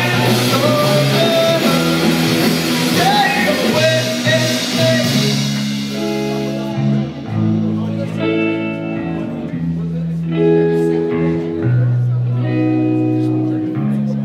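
Live rock band playing electric guitars, bass and drums. About six seconds in, the full-band sound drops to long, held guitar chords over bass, with only occasional drum hits.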